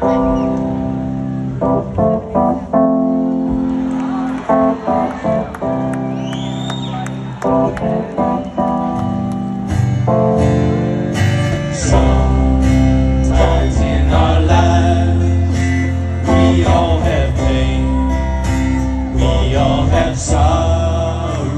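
Live band playing a song led by strummed guitars, with a voice singing "oh yeah"; a much heavier low end comes in about twelve seconds in.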